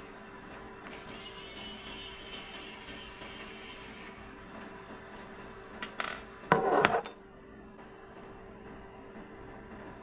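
A small screwdriver working on the metal heater block of a 3D printer hotend. There is a hissy scraping for a few seconds early on, then a click and a louder, brief scrape of tool on metal about six and a half seconds in.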